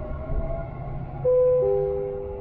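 Dubai Metro train running with a low rumble. A little over a second in, a loud two-note chime sounds, high note then lower note, and both notes hang and slowly fade: the onboard chime that comes before a station announcement.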